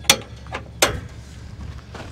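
Sharp metal clicks from a latch in a tractor's engine bay being worked by hand beside the cooler pack: two loud clicks, one near the start and one just under a second in, with a fainter click between.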